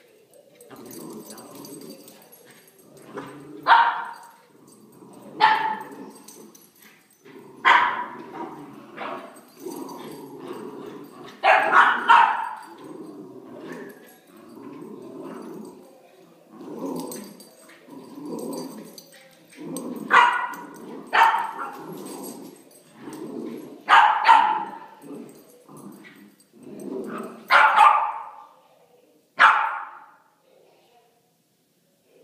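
West Highland White Terrier and Havanese puppies barking in play while tugging at a toy: about ten sharp, high barks, some in quick pairs, with quieter low sounds from the tussle in between.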